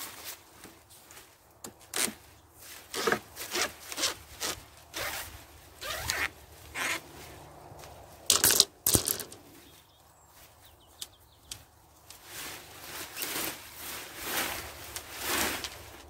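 Leaves and stems of spent runner bean plants rustling as an armful is handled and piled onto a raised bed: a run of irregular rustles, the loudest about halfway through.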